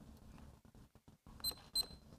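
Two short, high electronic beeps about a third of a second apart, over faint room noise.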